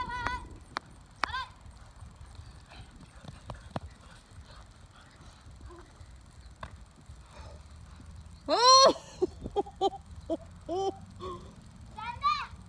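Children shouting while they play: a few short high-pitched yells near the start, then a long, loud, wavering squeal about two-thirds of the way through, followed by several short calls. A few sharp taps sound in between, over a low rumble.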